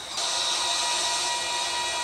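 Ocean-surf soundscape in a music track: a steady rush of wave noise under a faint held note, between sung phrases.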